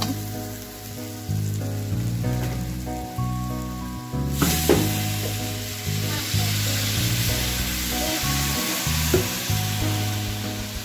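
Water poured into a hot steel kadhai of frying pav bhaji vegetables, bursting into a loud hiss about four seconds in and sizzling on, while a metal spatula stirs and scrapes the pan. Background music with held notes plays throughout.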